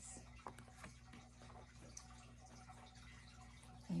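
Near-silent room with a low steady hum and a few faint taps, the first about half a second in, as a hardback picture book is handled, closed and turned to its cover.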